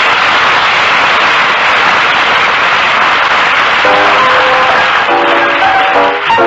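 Studio audience applauding after a band is introduced; about four seconds in, a piano starts playing over the applause as a small jazz combo's number opens.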